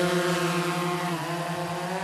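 Small white quadcopter drone flying low, its rotors giving a steady buzzing hum that dips slightly in pitch a little past halfway.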